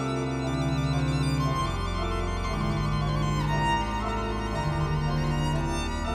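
Violin and pipe organ playing together. Held low organ notes shift to new pitches every second or so beneath a violin melody with vibrato.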